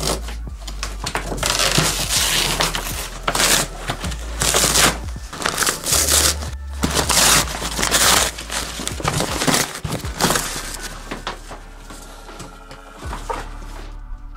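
A cardboard bike box being cut and torn open: irregular ripping and crumpling of corrugated cardboard and packing tape, dying down near the end.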